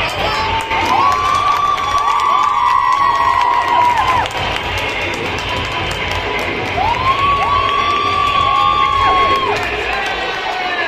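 Crowd of schoolchildren cheering and shouting, with two long drawn-out shouts by many voices together: one from about a second in that lasts some three seconds, and another from about seven seconds in that lasts nearly three seconds.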